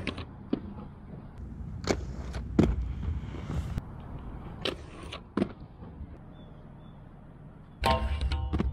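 Aggressive inline skate wheels rolling on concrete with a low steady rumble, broken by several sharp clacks and knocks of the skates landing and striking ledges and rails, the loudest about two and a half seconds in. The rumble fades lower in the last couple of seconds.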